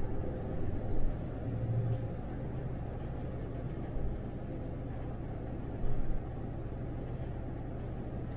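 Cabin sound of an MAN Lion's City articulated city bus cruising at about 70 km/h: a steady low rumble of tyres, road and drivetrain, with a few brief low thumps about a second in and again about six seconds in.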